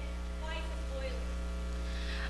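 Steady electrical mains hum on the sound feed, with a faint, distant voice briefly underneath it.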